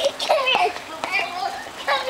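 A young child's high-pitched, excited vocalizing: wordless squeals and calls that rise and fall in pitch.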